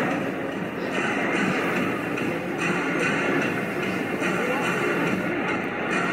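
A basketball video playing back through a device's speaker: music and voices over a steady background noise.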